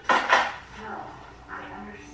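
A brief, loud clatter: two quick knocks about a fifth of a second apart, like hard objects striking together.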